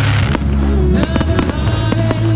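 Music with sustained chords, and aerial firework shells bursting and crackling over it, with a loud burst right at the start and sharp bangs through the rest.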